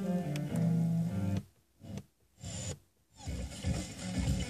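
Car FM radio playing string music on WDR 3 that cuts off about a second and a half in as the tuner steps up the band. What follows is a few brief snatches of sound, each broken by a silent muted gap.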